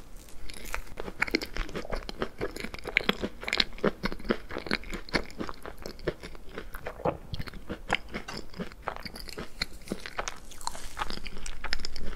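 A mouthful of chocolate layer cake being chewed close to the microphone, a rapid, irregular run of wet clicks and crunches. Near the end a wooden fork cuts into the cake.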